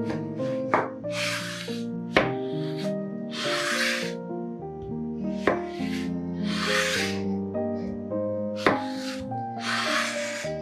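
A chef's knife slicing a cucumber lengthwise on a bamboo cutting board: four drawn-out rasping slicing strokes a few seconds apart, with sharp knocks of the blade on the board between them. Soft instrumental music plays throughout.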